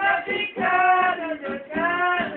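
A man singing to a plucked acoustic guitar accompaniment, holding long notes in the middle and near the end.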